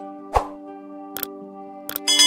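Calm background music holding steady sustained tones, over which a subscribe-button animation's sound effects play: a loud pop about a third of a second in, then two sharp clicks, one near the middle and one just before the end.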